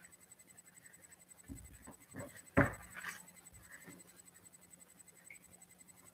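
Handling on a tabletop among papers: a few short, soft knocks and scrapes about one and a half to three seconds in, one of them louder, in an otherwise quiet small room.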